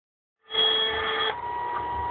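Electronic tones from a video-intro countdown. A held multi-tone chord starts about half a second in and changes to a single steady beep a little after one second.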